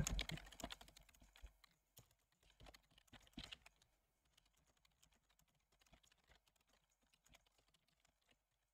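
Faint clicking of computer keyboard keys during steady typing, thinning out to only a few scattered clicks after about four seconds.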